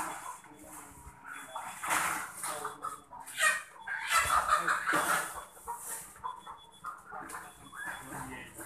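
Many ready-to-lay hens clucking and squawking together, with short overlapping calls from a crowded flock in plastic transport crates.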